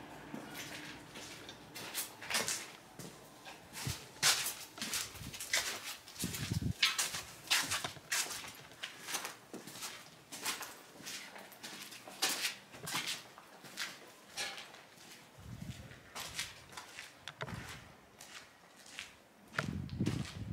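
Footsteps and scattered clicks and knocks on hard floors, irregular, one or two a second, with a couple of heavier thuds.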